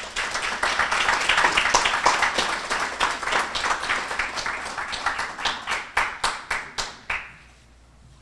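Audience applauding: many hands clapping, thick at first, then thinning to a few scattered claps that die away about seven seconds in.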